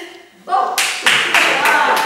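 A small group of people clapping, starting just under a second in, with voices calling out over the applause.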